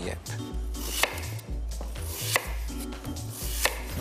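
Kitchen knife dicing peeled apple on a wooden chopping board: irregular knocks of the blade against the board, the strongest about a second apart, over background music with a steady bass line.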